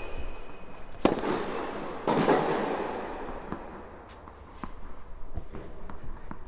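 Tennis racket strikes on the ball, two sharp hits about a second apart, each ringing out in the echo of an indoor tennis hall, followed by lighter ball bounces and shoe taps on the court.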